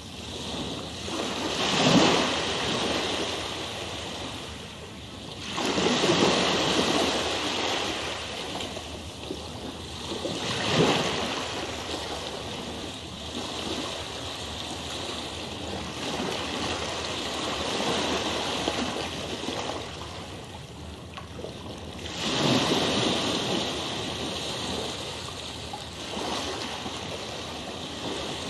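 Rushing water ambience, a steady wash of noise that swells and ebbs, with four louder surges.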